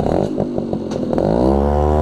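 Motorcycle engine heard from on board while riding. Its pitch drops as the revs fall about a second in, then holds steady.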